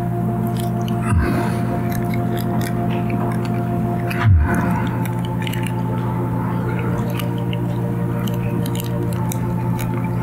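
Soft background music of held, sustained chords, with a communion cracker being chewed close to the microphone as small crisp crunches.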